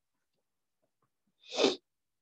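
A single short sneeze, about one and a half seconds in.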